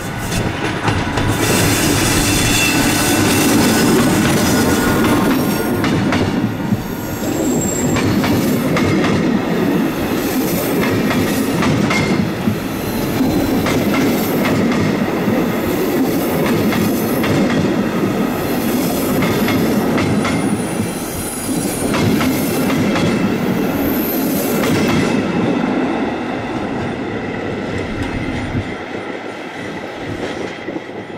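Intercity train hauled by a V43 'Szili' electric locomotive rolling past, its passenger coaches making a steady rumble with clicking wheels over rail joints and points and a few brief high wheel squeals. The sound fades near the end as the train pulls away.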